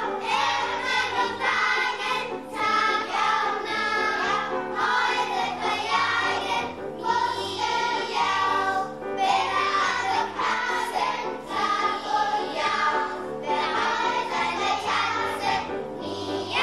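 Children's choir singing a song.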